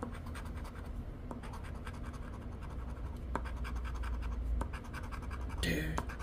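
Poker-chip-shaped scratcher coin scraping the latex coating off a $50 Florida Lottery scratch-off ticket in rapid back-and-forth strokes, many per second, with no pause.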